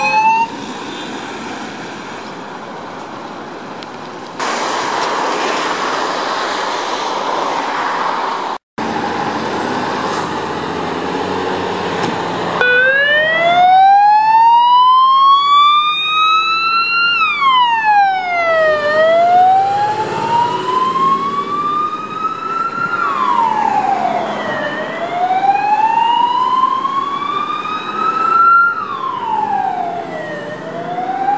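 Fire engine siren wailing: a slow rise of about four seconds, then a quick drop, three times over. A fainter second siren overlaps midway. Before the siren starts, about a third of the way in, there is only engine and road noise.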